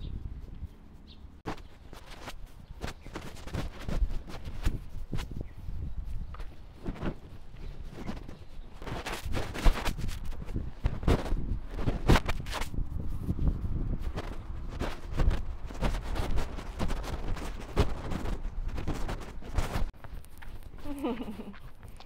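Handling noise from a camera microphone rubbing against a jacket while walking: a run of irregular scrapes and knocks over a low rumble. A woman's voice comes in briefly near the end.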